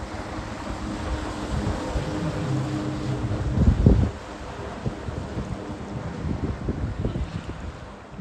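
A motorised jetboard running across the water, with a rush of spray and a faint steady drive tone, mixed with wind buffeting the microphone. The loudest rush comes just before four seconds in, and after that the sound is quieter as the board moves away.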